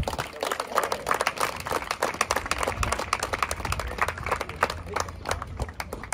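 Applause: many people clapping their hands irregularly, with no steady beat, thinning out near the end.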